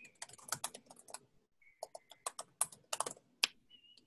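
Typing on a computer keyboard: quick runs of key clicks, with a short pause about one and a half seconds in.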